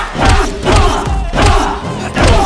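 Loud shouts and yells with thuds in a staged fistfight, coming in about three bursts.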